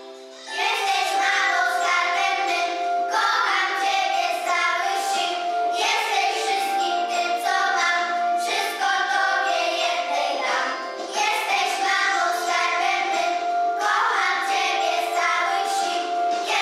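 A group of young children singing a song together. A new phrase begins about half a second in, after a held note fades, and the singing continues without a break.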